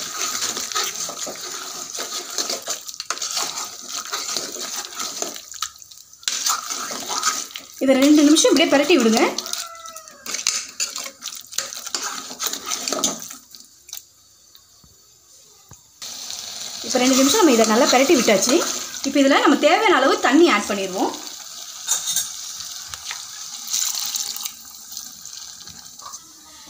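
Chicken and masala sizzling in an aluminium pressure cooker with a steady hiss while a spoon stirs them, with short clicks of the spoon against the pot. The sound drops almost away for a couple of seconds just past the middle.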